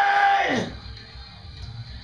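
A man's held metal vocal yell into a microphone, one steady pitched note that slides sharply down and cuts off about half a second in, leaving only a faint low room hum.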